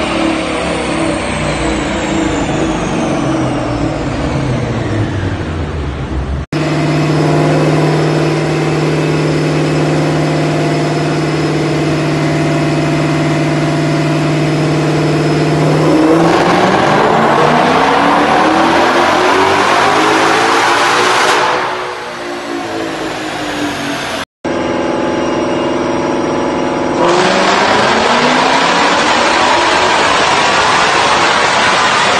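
2020 Shelby GT500's supercharged 5.2-litre V8 on a chassis dyno, in several edited-together clips. The revs wind down from a pull. After an abrupt cut the engine holds a steady speed, then makes a full-throttle pull that rises in pitch for about five seconds before the revs drop. After another cut near the end it holds steady again and starts rising into another pull.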